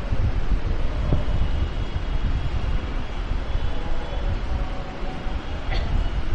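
Steady low rumble of background noise, with no speech over it.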